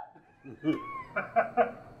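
Human voices reacting: a drawn-out, gliding 'aww'-like vocal sound, then a few short bursts of laughter.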